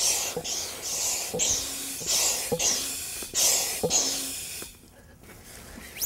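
Hand pump inflating a kite's leading-edge bladder: a run of short hissing air strokes, about two a second, each with a faint click, stopping a little before the end. The kite is being pumped up to check that a newly fitted inflate valve holds air.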